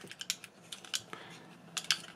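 Plastic parts of a Takara Tomy Masterpiece MP-47 Hound transforming figure clicking as they are handled and moved into place: several faint, scattered clicks, two close together near the end.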